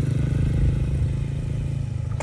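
An engine running steadily: a low, pulsing hum that eases off slightly in the second half.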